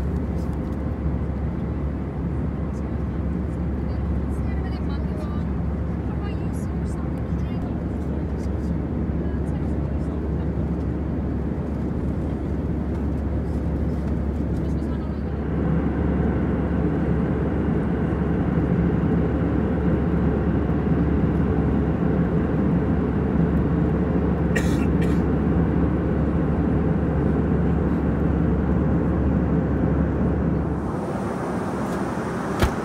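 Airliner cabin noise of an Airbus A320-214 in cruise: the steady drone of its CFM56 engines and airflow with a low hum, louder from about halfway through. A couple of brief clicks near the end.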